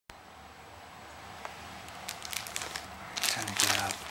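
Clear plastic film wrapped around a new laptop crinkling as it is handled and pulled at, starting about two seconds in.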